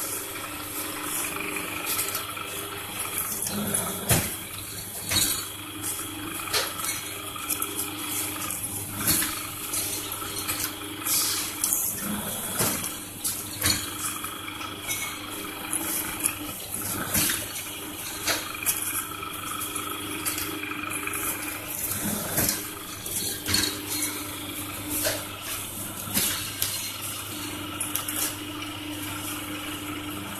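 Paper plate making press running with a steady hum and rushing noise, and irregular clicks and clatter as the dies press and plates are handled.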